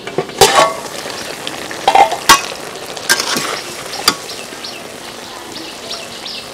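Cauliflower and snakehead fish curry sizzling in a wide aluminium pan over a wood fire, with several sharp metal clanks from the lid coming off and the spatula knocking the pan; the loudest come about half a second and just over two seconds in.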